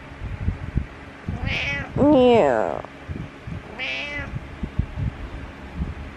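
Domestic cat meowing three times: a short high call about a second and a half in, a longer, louder meow that bends down in pitch right after it, and another short high call about four seconds in.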